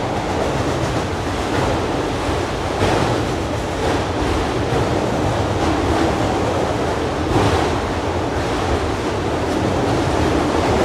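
Freight train of autorack cars rolling across a steel deck bridge overhead: a steady rumbling roar of steel wheels on rail, with a few louder clacks.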